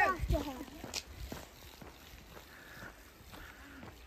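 A voice briefly at the start, then a faint outdoor background with a few soft knocks.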